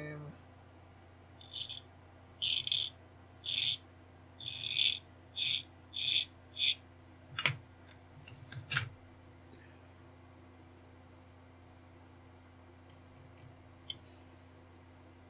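A small hand tool scraping across a small plastic model-kit part in about seven short strokes, roughly one a second, trimming off moulding flash. Two sharp clicks follow a little past the middle.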